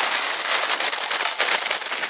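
Oak lumpwood charcoal poured from a paper sack into a Weber kettle barbecue: a dense, steady clatter of lumps knocking onto the steel charcoal grate and against each other.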